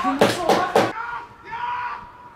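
Four quick hand claps in the first second, mixed with a shouting voice, then a short call from a voice near the end.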